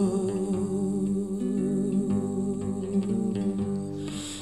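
A woman's voice holds one long wordless note over softly picked acoustic guitar, in a live solo song.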